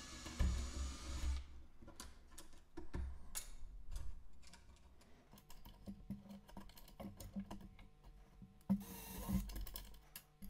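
A cordless drill runs briefly as a 3 mm bit goes through two wooden craft sticks held in a jig. Then come the light wooden clicks and clatter of the sticks being pulled out and fresh ones set in place, and the drill runs again for a moment near the end.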